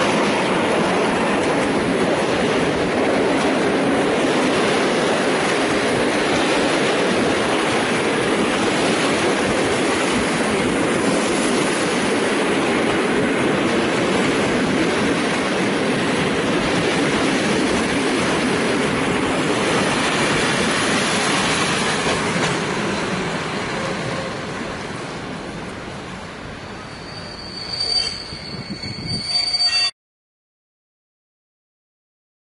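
Electric locomotive and passenger coaches of an arriving train rolling past close by, with loud, steady wheel-on-rail noise. After about twenty seconds the noise fades away as the train draws to a halt.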